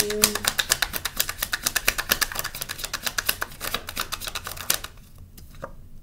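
Oracle card deck being shuffled by hand, the cards clicking rapidly at about ten a second. The shuffling stops nearly five seconds in, leaving a few scattered clicks.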